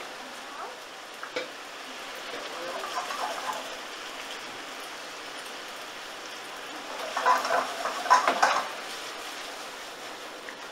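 Tortiglioni pasta sizzling in a frying pan of onion and pancetta sauce, a steady hiss with a few clicks. About seven seconds in, louder sizzling and stirring noises come in bursts as pasta cooking water is added to the pan.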